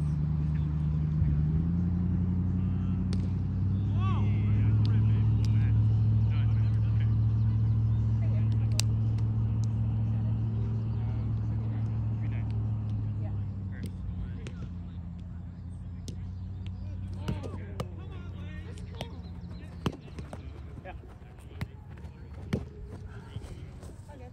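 Low engine drone that steps up in pitch twice in the first few seconds, holds steady at its loudest through the middle, then fades away over the second half. A few sharp ticks sound over it.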